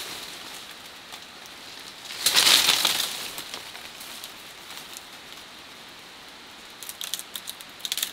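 Leaves and branches rustling for about a second, a little over two seconds in, as a long forest vine is pulled down through the undergrowth. Near the end comes a quick run of light crackles and snaps as the vine is handled.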